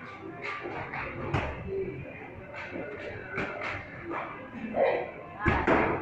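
Medicine ball repeatedly thrown against a brick wall and caught during wall-ball reps, giving short thuds several times over a few seconds, with music playing in the background.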